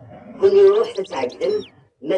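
A voice reading aloud in Kabyle, with small birds chirping in the background, a few high, short, falling chirps in the second half.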